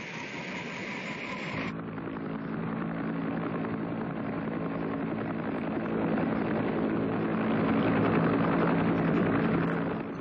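A helicopter's engine and rotor running steadily and slowly growing louder. A different noise cuts off about two seconds in.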